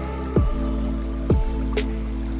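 Instrumental background music: sustained, held chords with two deep hits that drop quickly in pitch, about a second apart.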